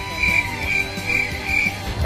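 Background music with a high note pulsing about twice a second, which stops near the end.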